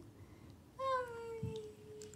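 A young child's drawn-out, high-pitched wordless call. It starts a little before the middle, is held for over a second and slides slowly down in pitch. A soft low knock comes near the end.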